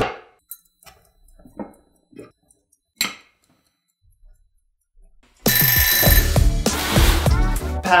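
A few faint clicks and a sharp knock about three seconds in, then near silence. About five and a half seconds in, loud music starts together with the bell of a mechanical kitchen timer ringing.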